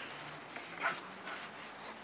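Pit bull puppies playing and making small dog sounds, with a short, sharper sound about a second in.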